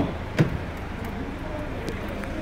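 A click, then a short thump a moment later, from the open rear door of a car being handled, over a steady low background rumble.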